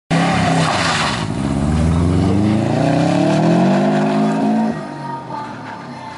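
Subaru Impreza rally car launching hard from the start line, its flat-four engine revving with a burst of tyre noise in the first second. The engine note climbs steadily in pitch for several seconds, then drops and falls away suddenly near the end as the car pulls into the distance.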